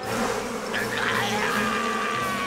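Cartoon sound effect of a small flying insect buzzing, over soft background music.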